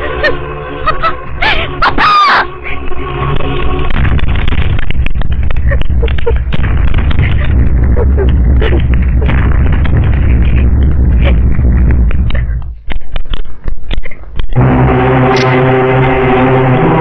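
A woman's tearful, distressed voice with a wailing cry that rises and falls about two seconds in. Then comes a dramatic film score of heavy drumming with many sharp strikes. Near the end it gives way, after brief dropouts, to a sustained droning note.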